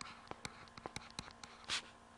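Faint pen stylus writing on a tablet screen: a string of light ticks and taps, with one short scratchy stroke near the end.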